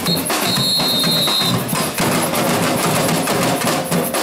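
Batucada percussion group playing a steady drum rhythm on bass drums and snare drums with hand-held percussion. A high, steady tone sounds for about a second near the start.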